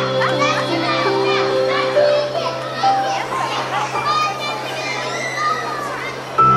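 Children's voices chattering and calling out over soft live music, with held notes from a violin and an electric keyboard underneath.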